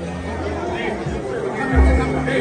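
Crowd of people chattering in a large hall, then music with a heavy bass beat comes in near the end.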